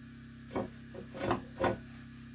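Four short scraping rubs by hand in quick succession, starting about half a second in, over a steady low hum.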